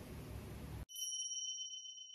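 A single bright, bell-like 'ding' sound effect rings out about a second in, right after the room sound cuts off abruptly, and fades away slowly.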